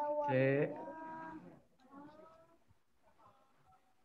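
A person's drawn-out voice, such as a hum or a stretched-out syllable, lasting about a second and a half, heard through an online-call connection. Fainter voice sounds follow, then near quiet.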